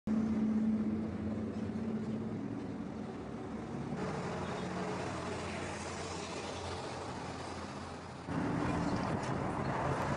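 Street background sound with motor traffic, including a low steady hum in the first few seconds; the background changes abruptly about four and eight seconds in.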